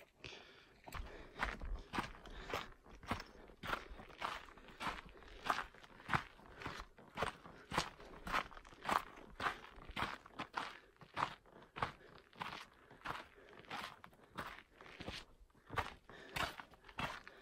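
Footsteps crunching on a rocky, gravelly mountain trail at a steady walking pace, about two steps a second.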